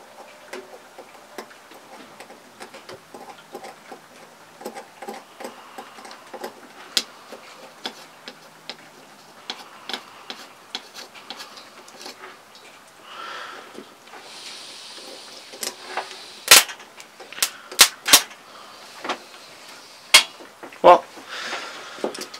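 A starter relay (solenoid) is energized by touching a battery-charger clamp to its terminals. It gives faint scattered ticks, then a run of sharp, loud metallic clicks in the second half as the clamp makes and breaks contact. The owner believes the relay is faulty, with the spring that holds its contacts apart gone bad.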